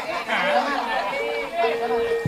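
Several people chattering at once. A steady held tone comes in a little past halfway.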